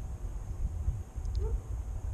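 Low, steady rumble of wind buffeting the camera microphone, with a couple of faint short sounds about one and a half seconds in.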